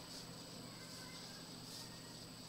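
Faint steady hiss with a low hum: quiet room tone, with no distinct sound events.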